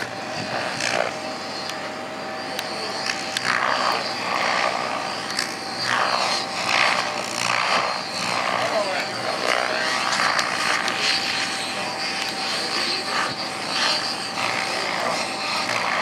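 Radio-controlled helicopter flying 3D aerobatics: a steady high whine from the rotor head and drive, with repeated swelling whooshes of blade noise and shifts in pitch as it manoeuvres.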